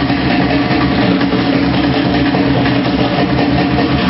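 Loud live band music, one unbroken dense wash of drums and instruments.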